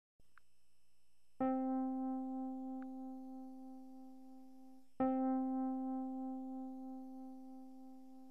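Two single electric-piano notes on the same pitch, struck about three and a half seconds apart, each ringing on and slowly fading.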